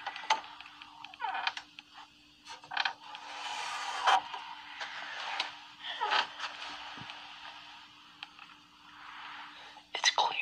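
An interior door being opened slowly from a dark room, with creaks, scraping and rustling handling noise, over a faint steady hum.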